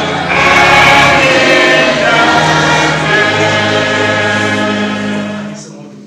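A church congregation sings a hymn together, settles onto a long held closing note, and fades out about five and a half seconds in.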